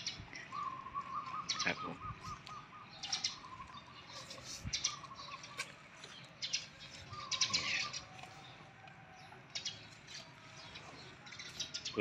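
Small birds chirping faintly and on and off: a few short wavering trills and scattered thin high chirps.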